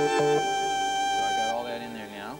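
Synthesizer played from its keyboard: the end of a simple three-part passage of bass, chords and a harmonica voice, closing on a held chord that is released about one and a half seconds in.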